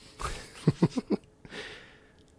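A man's breathing and short throat sounds, close to the microphone, as he raises a glass of whiskey to taste it: a breath in, four quick low pulses in a row, then a breath out.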